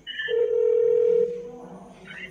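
Telephone line tone at the start of a recorded phone call: a brief high beep, then one steady low tone lasting about a second that fades away.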